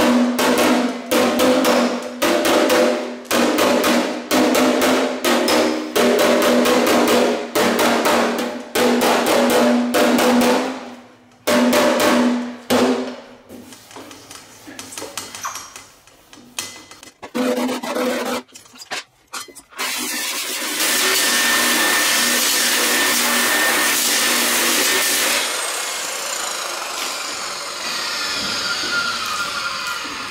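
Body hammer striking a steel Model A body panel about twice a second while working out dents, the panel ringing with each blow, then scattered lighter taps. Near the end an angle grinder with a shrinking disc runs on the panel for about five seconds, then spins down with a falling whine.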